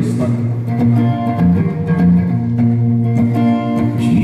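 Acoustic guitar played live on stage, an instrumental passage of picked and strummed notes that change every half second or so.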